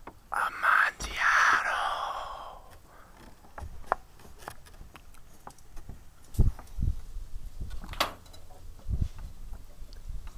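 A breathy, unclear human voice, like whispering, for about two seconds near the start, then scattered knocks and dull thumps.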